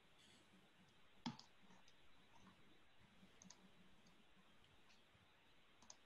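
Near silence on an open microphone, broken by a few faint clicks. One sharper click comes about a second in and a few softer ones follow.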